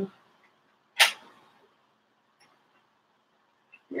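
A single sharp click about a second in, from the loose plastic-and-metal joint of a doll stand being handled and tightened.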